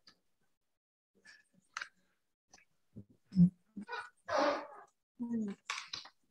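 A person breathing and sighing, with a few small clicks and a single low thump about three and a half seconds in. A long breathy sigh comes near the end.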